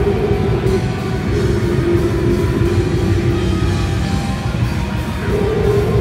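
Live death metal band playing loud and dense: guitars and a drum kit with fast, continuous drumming under a held guitar note.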